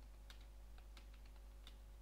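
Faint computer keyboard typing: about half a dozen soft, irregularly spaced keystrokes as a terminal command is typed.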